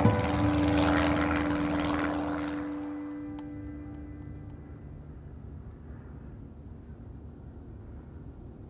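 Cessna 185 piston engine and propeller droning in flight: a steady hum with a few held tones that fades away over the first four to five seconds, leaving a faint low hum.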